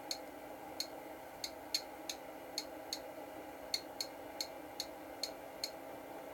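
Bench power supply's adjustment knob clicking, a dozen single clicks at uneven spacing, roughly two a second, as the current is run up slowly through three electric matches in series. Under the clicks is the supply's steady cooling-fan hum.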